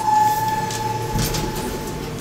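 Elevator arrival signal on a Montgomery/KONE hydraulic elevator: one steady electronic tone held for nearly two seconds, over the low rumble of the car doors, with a few clicks about a second in.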